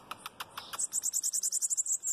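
Bananaquit (sibite) singing: a few short, high notes, then from under a second in a rapid, very high-pitched trill of about ten notes a second.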